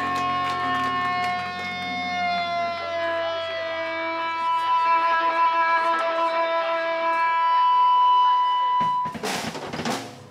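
Amplified electric guitars and bass holding their last notes as long sustained tones that drift slightly down in pitch. About nine seconds in the tones cut off and a short burst of crackling noise follows.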